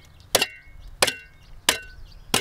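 Steel shovel blade jabbed into hard, compacted subsoil at the bottom of the B horizon: three sharp strikes about two-thirds of a second apart, each with a brief metallic ring. The ground at this depth is too hard to dig any further.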